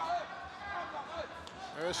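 Kickboxing arena ambience: background voices of the crowd and corners calling out over a steady hall noise, with a sharp smack near the end.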